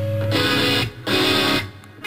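Live rock band with guitar, bass and drums playing the closing hits of a song: a held chord stops, then two short full-band chord hits, each about half a second long, cut off with brief gaps between them.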